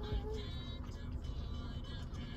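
A drawn-out, slightly falling "mmm" hum of someone savouring a mouthful of food, trailing off about half a second in. After it there is only faint low background noise.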